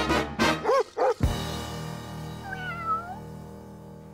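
Jazzy brass theme music that ends with a sudden stop about a second in, leaving a held chord that slowly fades. A short meow-like cry that dips and rises in pitch sounds over the fading chord.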